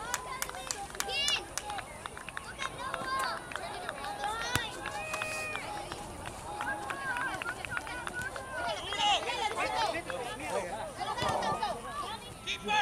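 Scattered shouts and calls from players and sideline spectators during a youth soccer match, some high-pitched, with a few sharp knocks among them.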